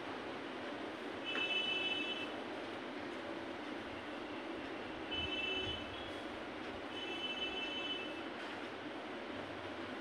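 Steady room hiss with three brief, faint high-pitched squeals, each about a second long.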